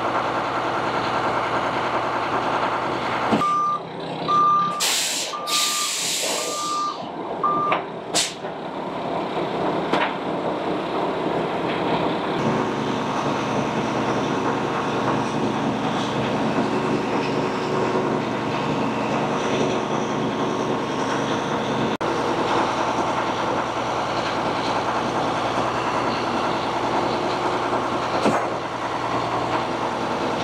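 Heavy diesel engine of a concrete mixer truck and boom pump running steadily. A few seconds in, a truck's reversing alarm beeps about six times, with a loud air-brake hiss in the middle of it.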